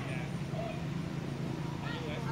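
Outdoor ambience: a steady low hum with a faint high whine, and a few faint short chirping calls gliding in pitch, one near the start, one about half a second in and a rising one near the end.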